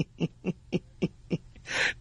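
A man laughing in short, evenly spaced pulses, about four a second, with a breathy sound near the end.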